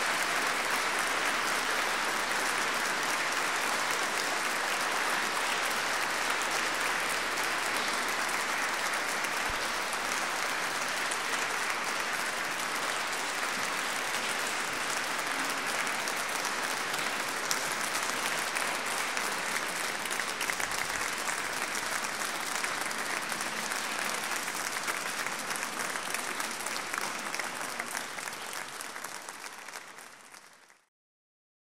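Audience applauding steadily, fading away over the last few seconds.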